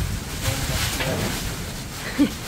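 Steady noise of heavy typhoon rain and wind, with wind rumbling on the microphone.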